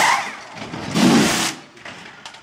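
Formula 1 pit-crew pneumatic wheel guns spinning the wheel nuts: a short burst at the start and a louder half-second burst about a second in.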